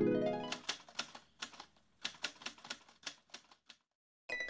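Typewriter sound effect: a quick, uneven run of keystroke clicks, about eighteen in three seconds, starting about half a second in. In the opening half-second the tail of a plucked, harp-like musical phrase fades out.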